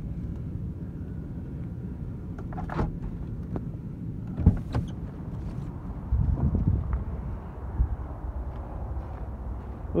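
Low steady rumble of a pickup truck's running engine heard from inside the cab, with a few clicks and knocks, the sharpest about halfway through, and the rumble growing louder for a moment about six seconds in, as the driver gets out at the curb.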